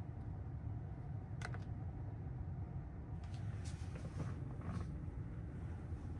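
Steady low hum inside a parked electric car's cabin, with a few faint clicks.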